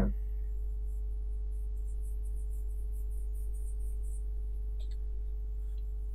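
A steady, low electrical hum with a few faint, constant higher tones over it, the background noise of the recording between speech.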